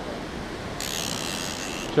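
Surf washing on a beach with wind on the microphone, a steady hiss that turns brighter and louder about a second in.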